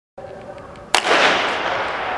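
Starting pistol fired once about a second in to start a 200 m sprint heat, followed by a long echo ringing around the stadium.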